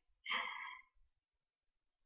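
A short, faint sigh from a woman, about a quarter second in.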